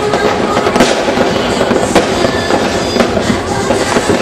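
Dense, continuous crackle of many firecrackers and fireworks going off together, with a few sharper bangs standing out about one and two seconds in.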